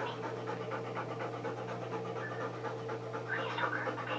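A dog panting steadily in an even rhythm, over a constant low hum.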